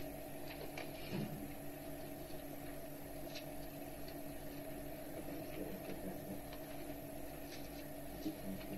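Steady hum and hiss of an old cassette recording, with a few faint clicks.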